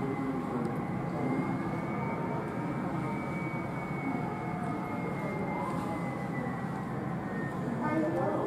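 Jet engines of a taxiing United Boeing 767, heard muffled from inside the terminal: a steady rumble with a thin whine that slowly drops in pitch.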